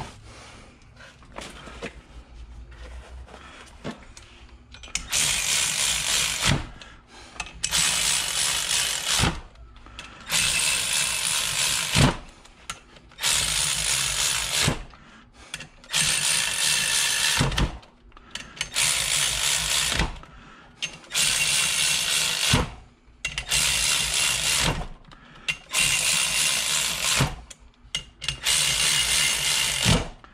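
Milwaukee 3/8-inch cordless electric ratchet running ring-gear bolts down onto a differential carrier in about ten separate runs of a second and a half each, many ending in a sharp click. The bolts are being snugged while the ring gear is still hot from the oven, not yet torqued.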